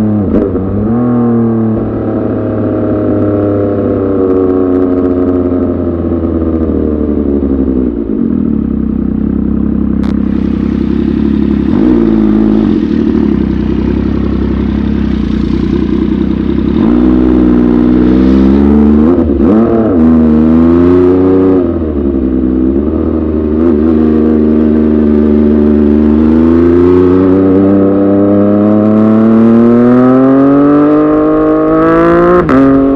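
MV Agusta F3 675's inline three-cylinder engine heard from the rider's seat while riding in traffic. The revs fall and climb again several times, hold steady and lower for a few seconds in the middle, and rise steadily near the end as the bike accelerates.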